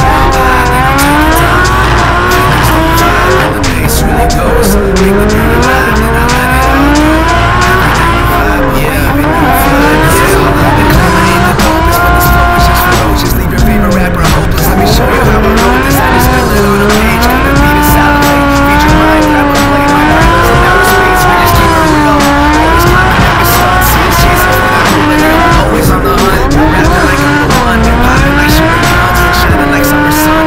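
Drift car engine revving hard, its pitch climbing and falling again and again as the throttle is worked through the slides, with tyres squealing, heard from onboard the car. Background music plays along with it.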